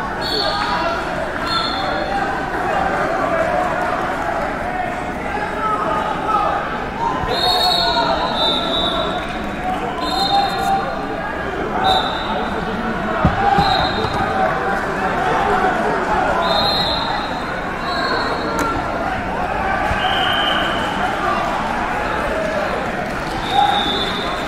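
Murmur of many voices in a large gym hall, with about ten short, high-pitched squeaks scattered through it.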